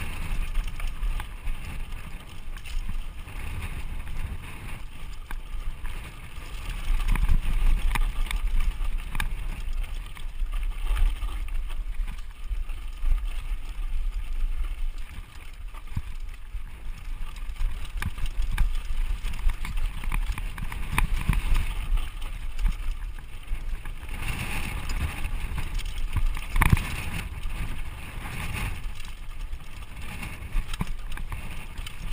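Mountain bike descending a rough dirt trail: wind rushing over the microphone, with tyre noise and frequent knocks and rattles from the bike over bumps, the loudest knock near the end.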